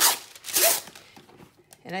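A sheet of waxed paper crinkling and rustling as it is handled, with two short bursts in the first second.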